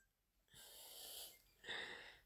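Near silence with two faint breathy sounds: a soft drawn-out breath from about half a second in, then a shorter one near the end.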